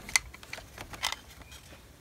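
A few sharp plastic clicks and small rattles from a string light's plastic battery box as two batteries are fitted into it, with the loudest clicks just after the start and about a second in.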